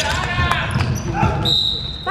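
Basketball dribbled on a hardwood gym floor, with thumping bounces and sharp shoe and ball noises, and players and spectators calling out in the hall. A brief, high, steady tone comes near the end.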